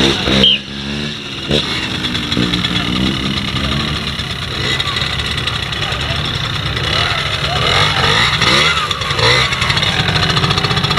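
Small trials motorcycle engine running at low speed as it is ridden slowly over rough ground, its revs rising and falling.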